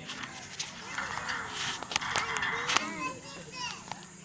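Chatter of a crowd of zoo visitors, children's voices among them. A few sharp clicks fall in the first half, and high-pitched voices call out from about three seconds in.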